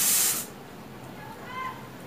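A loud, steady hiss that cuts off suddenly about half a second in, then a brief high chirp about a second later.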